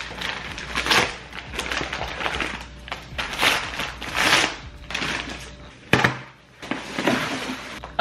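Brown paper mailer being torn open and its packaging crinkled and rustled in irregular bursts, with one sharp knock about six seconds in.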